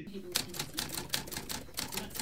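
A rapid, irregular run of crisp clicks, about six or seven a second, like typing, starting about a third of a second in. A lecturer's voice plays quietly underneath from a recorded lecture.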